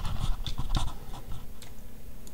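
Short, irregular scratchy strokes and rustles of a pen being drawn across paper and handled close to the microphone, dying away after about a second and a half, leaving a low steady hum.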